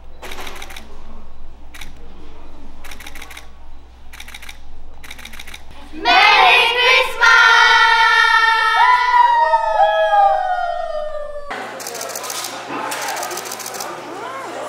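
A group of young women calling out "Merry Christmas!" together about six seconds in, a loud, drawn-out shout with the voices sliding down in pitch. Before it there is quiet chatter broken by several sharp clicks.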